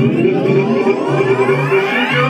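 Live electronic music with a rising synthesizer sweep: several pitches glide steadily upward together across about two seconds over a held note and a pulsing bass.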